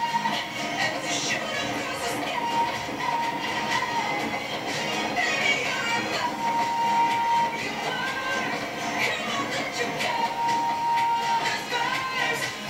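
Music playing along with a fireworks display, with many short pops and crackles from the bursting shells. A steady whistle-like tone is held for about a second a little past the middle and again near the end.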